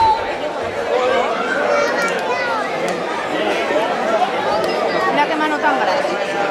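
Crowd chatter: many people talking at once, overlapping voices with no single speaker standing out.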